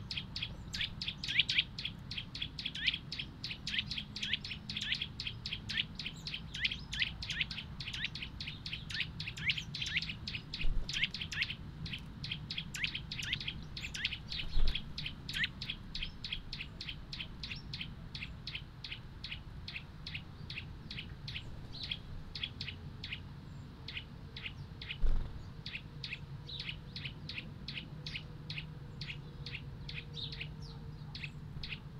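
A small songbird calling a long, steady run of short, falling chirps, about three a second, with a brief break near the end. Two low thumps stand out, about halfway through and near the end, over a steady low hum.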